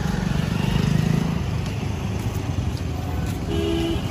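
Close road traffic: the engines of auto-rickshaws, scooters and motorcycles running and passing, a steady low rumble. A short pitched tone sounds near the end.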